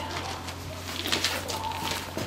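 A pigeon cooing, with a few footsteps on the ground.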